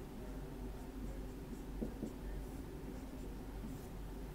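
Dry-erase marker writing on a whiteboard: faint, short scratchy strokes, with a small tick about two seconds in, over a steady low hum.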